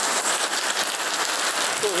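Steady downpour of rain, a dense wash of drops splashing on a tiled rooftop terrace.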